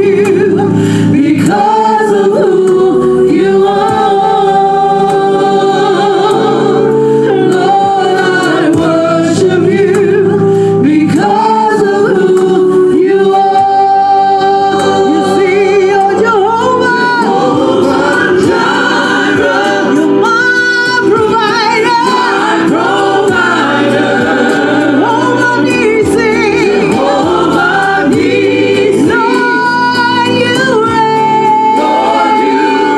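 A small gospel praise team of women and a man singing a slow song in harmony into microphones, with long held notes.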